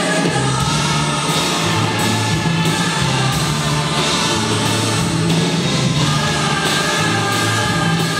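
Large student orchestra and choir performing live: strings and massed voices sing together over a steady low bass line, which comes in at the very start.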